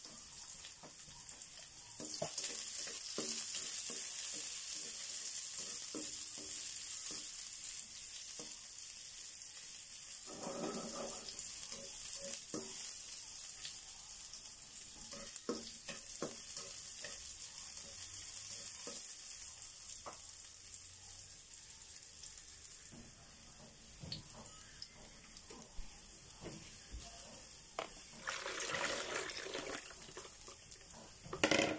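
Sliced onions and garlic frying in a wok: a steady sizzle with many small crackles and pops throughout.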